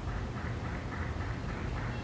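A quick series of about six short animal calls, roughly three a second, over a steady low background hum.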